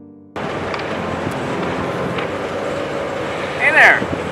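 Steady outdoor background noise, an even hiss with no distinct events, begins abruptly as soft piano music cuts off. A person's brief vocal sound comes just before the end.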